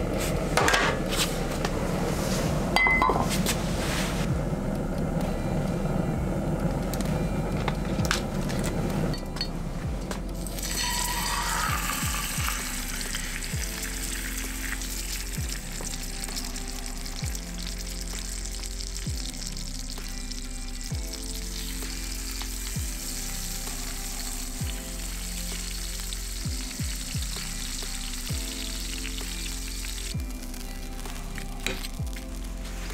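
A propane ring burner runs with a steady rush of flame. From about ten seconds in, a whole trout sizzles as it fries in a shallow pan of oil. Background music plays underneath.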